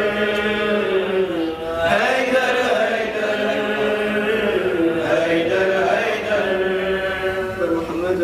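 A solo male voice chanting a devotional recitation in long, held, gliding phrases, with short pauses for breath between them.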